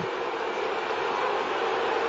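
Steady stadium crowd noise from a football crowd, an even wash of many voices with no single sound standing out.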